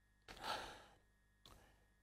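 A man's short intake of breath, about half a second long, taken in a pause of speech; otherwise near silence, with one faint click about a second later.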